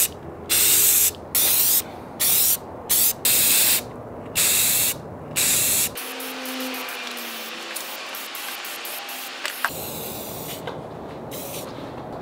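Aerosol spray-paint can hissing in short bursts, about eight in the first six seconds, then a quieter, steadier spray hiss for the rest.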